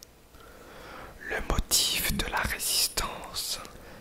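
Close-miked whispering: a voice reading aloud in French. It starts about a second in, after a quiet pause, and runs in breathy phrases with short gaps between them.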